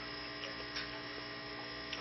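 Steady electrical mains hum, a stack of even tones, with a couple of faint ticks under a second in.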